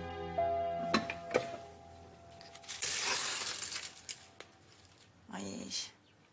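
Background music fades out, then dry spaghetti strands rustle and clatter as a bundle is dropped upright into a cooking pot.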